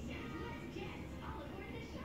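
Speech with music behind it, played back from a screen's speaker and picked up in the room.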